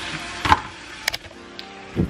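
Handling noises in a kitchen: a sharp knock about half a second in and a pair of clicks a little later, with faint music underneath.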